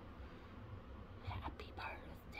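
A woman whispering faintly, breathy and unvoiced, about a second in, over a low steady room hum.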